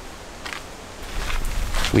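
Quiet outdoor background noise, joined about halfway by a low rumble of wind on the microphone that grows louder.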